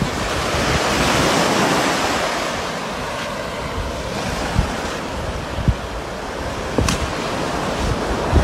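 Surf washing onto the beach, swelling about a second in and then easing, with wind thumping on the phone's microphone and a sharp click near the end.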